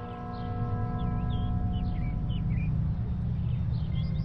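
A ringing tone, one pitch with overtones, that fades out over about two and a half seconds, with short high chirps like birdsong and a steady low rumble beneath.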